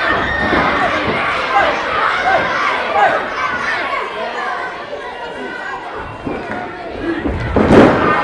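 Small live crowd chattering and calling out, then near the end a loud thud as a wrestler's body hits the ring canvas.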